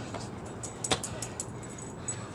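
Body-weight burpee on a concrete driveway: hands and shoes slapping and scuffing the concrete as the athlete pushes up off the ground and gets to his feet. There is one sharp slap about a second in, with a few lighter clicks around it.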